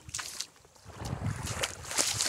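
Wind buffeting the microphone in uneven gusts, dropping to a brief lull about half a second in, over the hiss of small waves washing at the lake shore.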